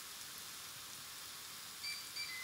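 Steak sizzling faintly and steadily between the closed plates of a T-fal OptiGrill electric contact grill, with a short high electronic beep near the end: the grill's signal that the steak has reached medium.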